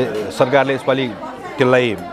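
A man speaking Nepali in a room with some echo: only speech.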